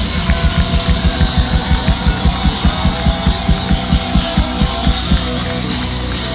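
Live rock band playing an instrumental passage: distorted electric guitars over a fast, steady drum beat, about four and a half hits a second.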